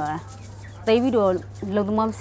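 A woman speaking Burmese in short phrases over a steady low hum.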